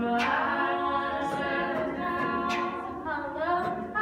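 An a cappella vocal group singing a song in close harmony, voices holding stacked chords with no instruments. Near the end the voices bend down and back up in pitch.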